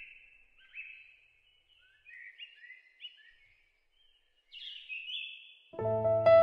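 Songbirds chirping in a series of short, high, repeated calls, a few a second, with a brief pause in the middle. Music comes back in just before the end.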